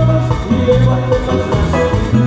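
Live dance band playing an instrumental passage: a bouncing bass line under a bright held melody, with percussion keeping a steady beat.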